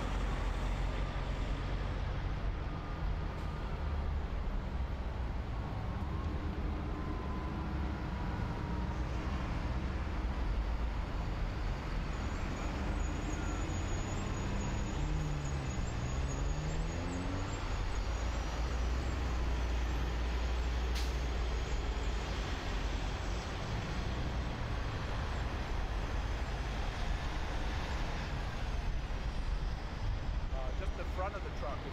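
Steady low rumble of heavy vehicles and road traffic, with one engine's pitch dipping and rising again about halfway through. A single sharp click comes about two-thirds of the way in.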